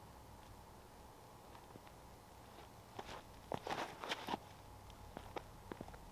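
Light footsteps and shoe scuffs on an asphalt driveway as a disc golfer steps through a throw and moves about: a cluster of sharp clicks about three to four and a half seconds in, a few more near the end, over faint outdoor background.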